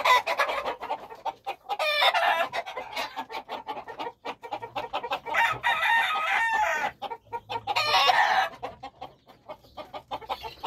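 Ajiseco gamecock crowing: several calls, the longest about a second and a half in the middle, with short clicks between them.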